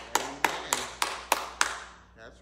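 A single person clapping hands in a steady beat, about three sharp claps a second, each with a short ring of room echo, the claps stopping shortly before the end.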